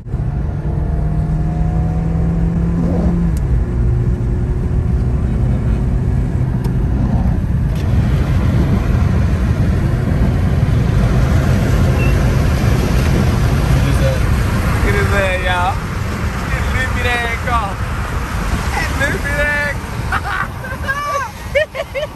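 Car driving on a wet road, heard from inside the cabin: engine and tyre noise, with a steady engine tone that rises briefly about three seconds in. From about fifteen seconds in, a voice talks over it.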